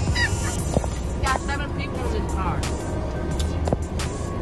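Eating sounds: short clicks and smacks of lips and fingers being licked clean of turkey-leg meat, over a steady low hum inside a car.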